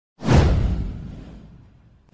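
A whoosh sound effect with a deep low end that hits suddenly, then fades away over about a second and a half.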